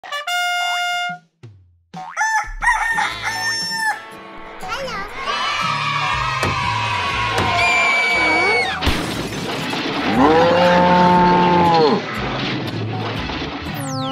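Cartoon soundtrack: upbeat children's background music with cartoon character vocal noises and sound effects over it, ending with a falling whistle as a character is knocked down.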